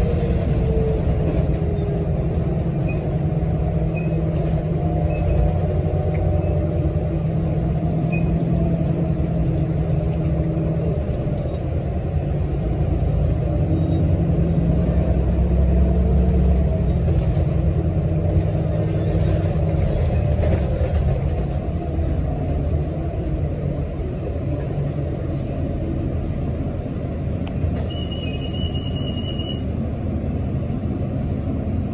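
Inside an articulated city bus under way: steady engine and drivetrain rumble, with a faint whine rising and falling in pitch. Near the end a high steady tone sounds for about two seconds.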